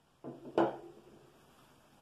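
A kitchen utensil knocking against a mixing bowl: a soft knock, then a sharper clink about half a second in that leaves a brief ringing tone.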